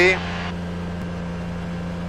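Rotax 582 two-stroke engine and propeller of a Kitfox in cruise flight, a steady drone heard from inside the cockpit. The engine is running smoothly.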